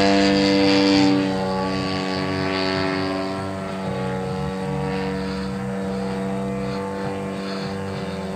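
The DLE 111 twin-cylinder two-stroke gas engine and propeller of a 100cc radio-controlled Yak aerobatic plane in flight, a steady droning buzz. It drops in level after about a second as the plane flies farther off.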